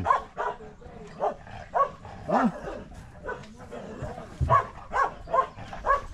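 A dog barking repeatedly in short barks, about two a second, with a brief pause before a last run of barks.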